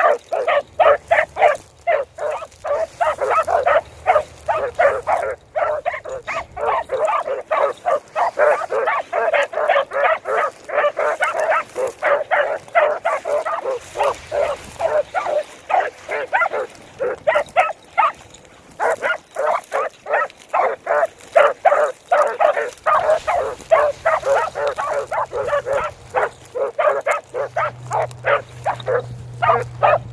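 Beagles barking rapidly and almost without pause, several barks a second. This is the hounds giving voice as they work a scent line through the grass.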